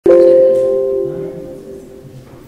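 A single bell-like chime sounds once right at the start, then rings on a few steady tones and fades away over about two seconds.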